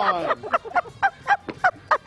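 A person laughing in quick, short pulses, about five or six a second, after a falling drawn-out "ohh" at the start.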